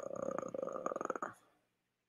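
A man's drawn-out hesitation 'uhh', held at one steady pitch in a gravelly, creaky voice for about a second and a half.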